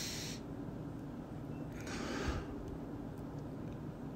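A man crying, with two sniffling breaths: one just at the start and a sharper one about two seconds in.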